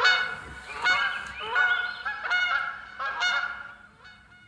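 Geese honking: a flock's overlapping calls, several a second, fading out near the end.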